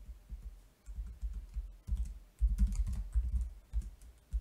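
Typing on a computer keyboard: quick keystrokes in uneven runs, loudest a little past halfway.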